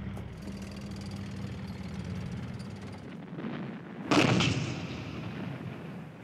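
A low steady rumble, then about four seconds in a single loud artillery blast that dies away over a second or two.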